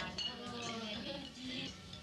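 Plates and cutlery clinking at a shared meal, quietly, under soft background music and low voices.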